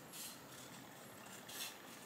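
Scissors cutting through a sheet of paper: two faint snips, one just after the start and one about a second and a half in.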